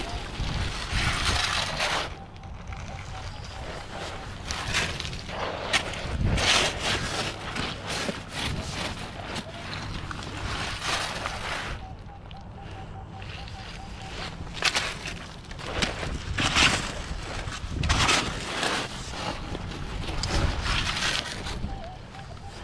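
Digging in a coarse pebble-and-sand shoreline: repeated crunching and scraping of stones against a metal scoop and shovel. Twice a faint steady tone from a Minelab Equinox 800 metal detector sounds briefly as its coil is passed over the hole to recheck the target.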